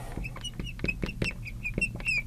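Marker tip squeaking on a glass lightboard while words are written: a quick run of short, high squeaks, about five a second, with light taps of the tip against the glass.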